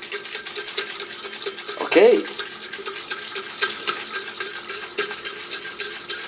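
A small amount of just-boiled water sloshing inside a sealed insulated metal mug that is being shaken hard: a rapid, uneven rattling swish.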